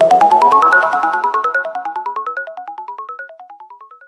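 Electronic logo jingle: a quick, even run of short synthesized notes, about eight a second, climbing steadily in pitch and fading away, stopping right at the end.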